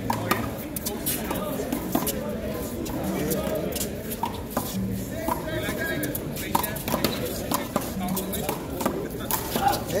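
One-wall handball rally: the small rubber ball smacked by gloved hands and bouncing off the concrete wall and court, sharp slaps at irregular intervals, over background voices.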